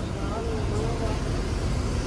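Steady low rumble of road traffic on a wet road, including a Mercedes-Benz OH 1830 coach's engine as it pulls away.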